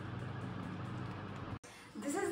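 A steady low hum over background noise, cut off abruptly about a second and a half in.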